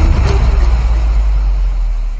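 The intro jingle's closing hit ringing out: a deep, sustained bass note with a brighter wash above it that fades within about a second, the bass holding on and dying away.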